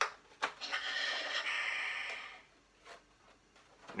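Clicks as a replica Darth Vader helmet is unlatched and lifted off the head, followed by a breathy hiss lasting about a second and a half, and a faint short rustle near the end.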